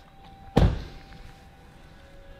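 The driver's door of a 2006 Range Rover Sport being pushed shut, closing with one solid thunk about half a second in.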